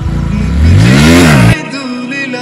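Bajaj Pulsar NS125 motorcycle engine revving hard, its pitch rising steeply, then cut off abruptly about a second and a half in as background music takes over.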